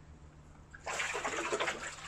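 Water splashing and sloshing as a pond net is swept through a fish tank, starting about a second in.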